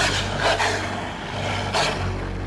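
Dramatic film sound effects: a low steady rumble with three short rushing noises, at the start, about half a second in and near the end.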